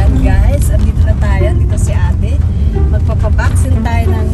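Steady low rumble of a car's engine and tyres on a wet road, heard from inside the cabin, with a voice running over it.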